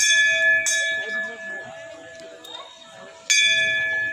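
Metal temple bell struck three times, each strike ringing on and slowly fading: two strikes close together at the start, then another about three seconds in, with faint voices of people nearby.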